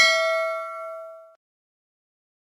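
Notification-bell sound effect of a subscribe-button animation: a single bell ding struck at the start, ringing out with a few clear tones and fading, then cutting off suddenly just over a second in.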